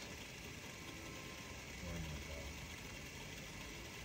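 Bolex 16mm film camera running, its clockwork drive whirring steadily with a fast, even ticking as film is pulled through the gate.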